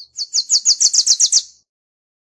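Wilson's warbler singing one song: a rapid run of about nine high, sharp chipping notes, roughly seven a second, growing louder toward the end and stopping about a second and a half in.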